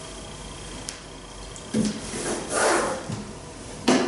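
A plastic toddler slide being gripped and shifted on a blanket, with rubbing and scraping about two seconds in and a short knock near the end.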